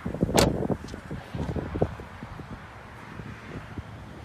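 A 2015 Ford Escape's front door shut once, a single sharp loud impact about half a second in. After it, handling rustle and wind on the microphone.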